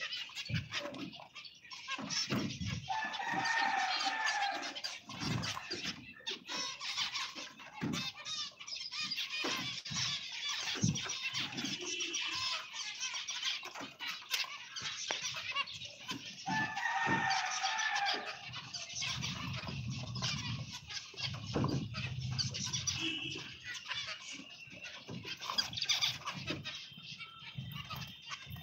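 A flock of finches chirping and calling continuously in a busy, high-pitched chatter. A rooster crows in the background twice, about three seconds in and again around seventeen seconds.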